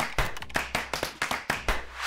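Typing sound effect: rapid, irregular keystroke clicks, about six or seven a second, as title text is typed out.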